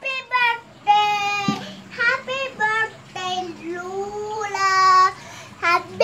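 A young child singing, in long drawn-out notes that slide up and down in pitch.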